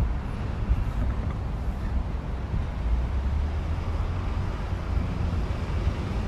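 Outdoor background noise: a low, fluctuating rumble under a faint even hiss, with no voice.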